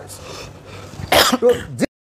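A man clearing his throat once, about a second in, followed by a short spoken word; the sound then cuts off abruptly into silence.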